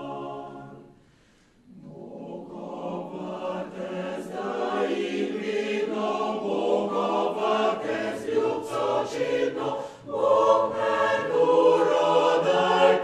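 Mixed choir of men's and women's voices singing: a held chord dies away about a second in, and after a short pause the choir comes back in softly and grows steadily louder, with a brief break shortly before the end.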